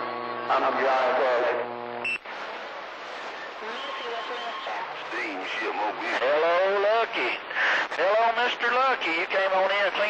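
CB radio receiver on the AM band carrying voices that are garbled and hard to make out, as when several stations key up at once. The first two seconds hold a steady buzzing tone that cuts off suddenly with a short high beep.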